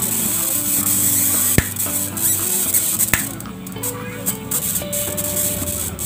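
High-voltage arcing from a CRT focus lead touched to the tube's green-cathode pin on the socket board, a dense hissing crackle with two sharp snaps about a second and a half apart. The tube is being zapped to revive its dead green cathode. Background music plays throughout.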